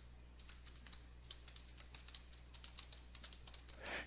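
Faint clicking of computer keyboard keys as a short line of text is typed: a quick, uneven run of keystrokes starting about half a second in.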